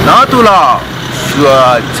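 A man speaking with pauses, over a low steady background of road traffic.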